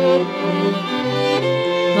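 String quartet playing held, sustained notes, violin on top, with a low note entering in the bass about a second in.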